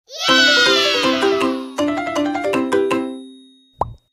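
Short children's intro jingle: a falling glissando opens into two phrases of a bright melody of short notes that fade away, then a quick rising pop sound effect near the end.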